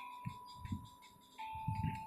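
A pause in speech filled by a faint, steady high-pitched whine that drops slightly in pitch partway through, with a few soft clicks.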